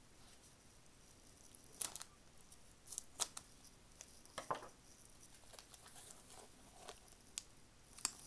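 A small taped cardboard card mailer being pried open by hand: faint, scattered rips of tape and crackles of cardboard.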